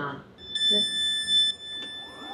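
Electronic alert tone on board a Caltrain Stadler KISS electric train: a steady high-pitched beep about a second long, with a fainter tone carrying on after it. It comes ahead of the recorded announcement that the doors are about to close.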